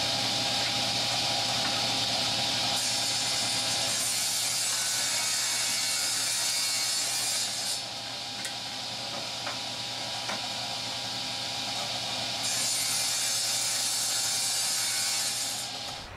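Table saw running and cutting 5/8-inch scrap plywood into strips: a steady motor hum under the hiss of the blade going through the wood, with two heavier cutting passes and a lighter stretch between them around the middle.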